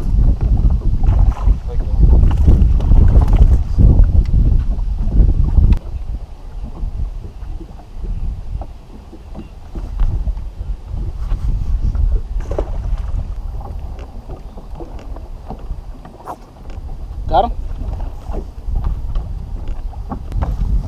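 Wind buffeting the action camera's microphone on an open boat deck: a heavy low rumble for the first six seconds, then lighter, with a few faint knocks.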